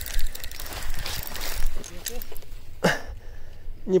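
Spinning reel being cranked, its mechanism clicking rapidly, as a heavy weight on the line is brought in; a few short mutters are heard later on.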